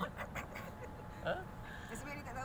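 A man's brief questioning "Ha?" about a second in, over faint open-air background murmur during a pause in the talk.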